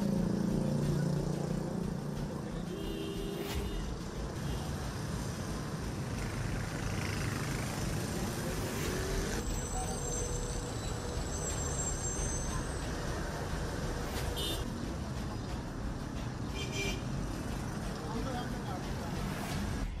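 Street ambience: a steady wash of road traffic noise with voices in the background and a few short tones scattered through it.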